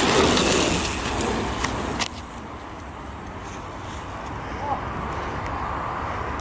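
Mountain bike tyres rolling on a dirt trail, a loud rushing for the first two seconds with a sharp click, then fainter as the bike moves away.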